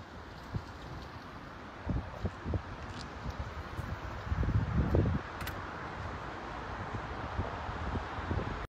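Wind buffeting the microphone in irregular low gusts, strongest around the middle, over a steady outdoor background hiss.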